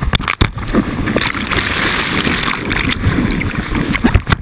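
Loud rushing and splashing of a river's standing wave, whitewater breaking over a board-mounted action camera. The sound drops out briefly a few times about half a second in.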